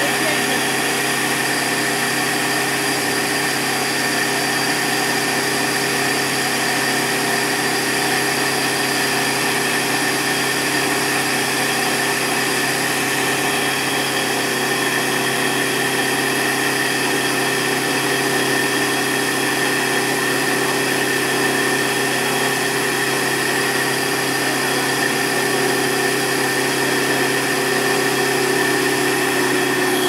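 Combined rice mill running continuously with a steady machine hum and a high whine.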